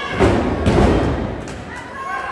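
Wrestlers' bodies colliding and hitting the wrestling ring: two heavy thuds about half a second apart, over crowd noise.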